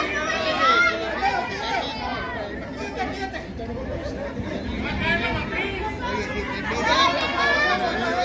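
Several people's voices talking and calling out over one another, with no single clear speaker.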